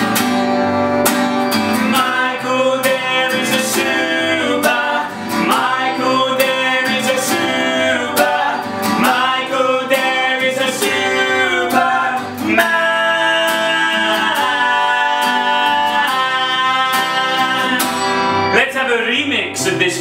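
Acoustic guitar strummed with a man singing the melody over it, some notes held long.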